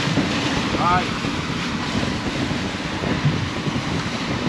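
Twin outboard motors running as the boat trolls, over the rush of its wake, with wind on the microphone. A short shout is heard about a second in.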